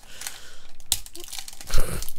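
Foil booster-pack wrapper crinkling and tearing as it is pulled open with difficulty, with a sharp crack about a second in. A low thump near the end.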